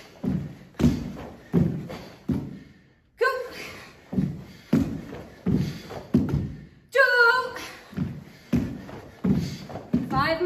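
Bare feet thudding on a wooden floor in a steady rhythm, about one thud every 0.7 seconds, as two karateka throw repeated front kicks. A voice calls out a count about three seconds in and again near seven seconds.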